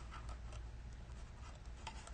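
Faint rustling and small ticks of hands handling a small cardstock gift box and its paper pieces, over a low steady hum.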